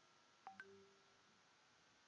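Two short electronic beeps in quick succession, about a tenth of a second apart, over near silence.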